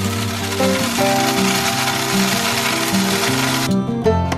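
Electric coffee grinder running as it grinds coffee beans. It starts abruptly and cuts off shortly before the end, under instrumental background music.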